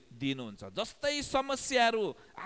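Speech only: a man preaching in Nepali.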